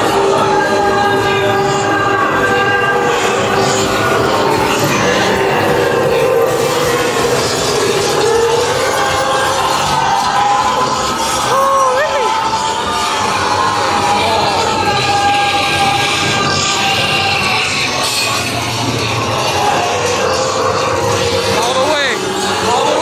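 A haunted maze's ambient soundtrack: layered, sustained eerie tones that slowly shift in pitch over a constant noisy bed, with a short upward sliding sound about halfway through.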